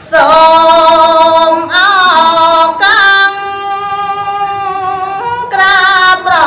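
A woman singing Khmer smot, unaccompanied Buddhist chanted poetry, into a microphone: long held notes with ornamental bends in pitch, a phrase opening at the start and another beginning near the end.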